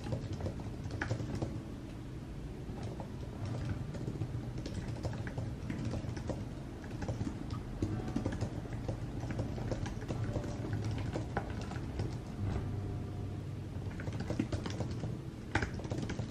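Typing on a computer keyboard: a quick, irregular run of keystroke clicks over a low steady hum.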